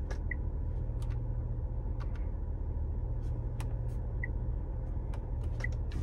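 Steady low hum of the SUV idling, heard from inside its cabin. Over it come faint clicks of fingers pressing the dashboard touchscreen and buttons, and three short high beeps from the infotainment system.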